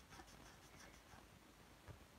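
Faint scratching of a felt-tip marker colouring on paper in short strokes, with a small tap near the end.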